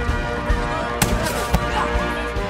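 Orchestral film score with held tones, cut by three sharp bangs about half a second apart, the loudest about a second in.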